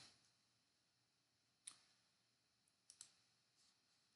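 Near silence with three faint computer mouse clicks: one a little before halfway, then two close together about three seconds in.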